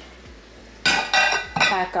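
Ceramic dinner plates clinking together as they are stacked, about a second in, with a brief ringing clatter.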